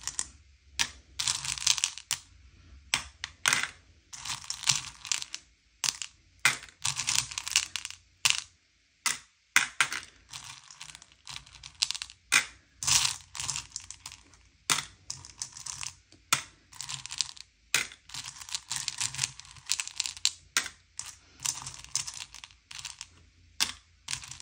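M&M's candies clattering as a hand stirs and scoops through them in a bowl, in repeated bursts of dry clicking lasting about a second each. Between the bursts come single sharp clicks of candies dropped into small clear plastic sorting cups.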